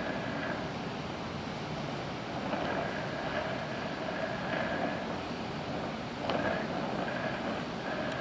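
DHC2000 oxy-acetylene welding torch with a #2 tip at low pressure (4 psi oxygen, 4 psi acetylene), its flame making a steady hiss as it melts a cast iron casting during a weld pass.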